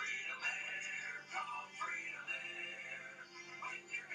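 Music with singing.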